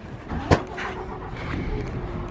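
Coach bus engine idling with a low steady rumble, and a single sharp knock about half a second in.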